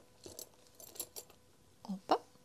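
A bunch of keys jingling faintly as it is lowered into a leather handbag, with a few light metallic clicks.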